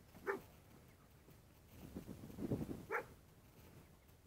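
German Shepherd dog giving two short, high barks about three seconds apart, with a spell of low rustling and thumps just before the second bark.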